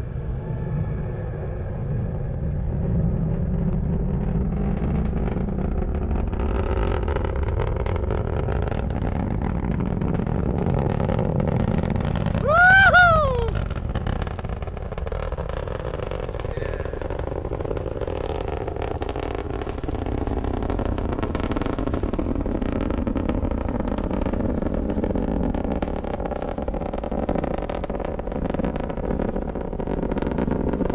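Falcon 9 rocket's nine Merlin first-stage engines heard from miles away: a steady low rumble with crackling that builds over the first few seconds and carries on. About thirteen seconds in, a short loud whoop rises and falls over it.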